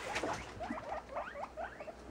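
Guinea pigs squeaking: a quick run of short, rising squeaks, about five or six a second.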